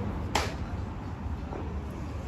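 A single sharp click about a third of a second in, over a low steady rumble.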